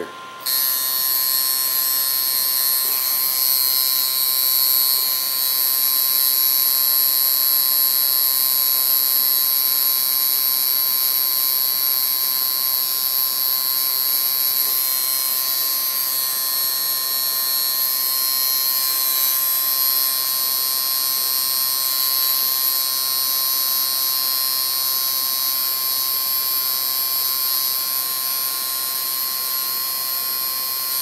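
Tattoo machine buzzing steadily while lining a tattoo's stencil outline. It starts about half a second in.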